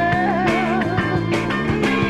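A 1970 rock single playing an instrumental stretch: drums keep a steady beat under bass and chords, while a lead line bends up and wavers in pitch during the first second.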